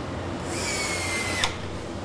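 Handheld power tool on a car assembly line running for about a second with a high whine that falls slightly, then cutting off with a click. A steady low factory hum runs underneath.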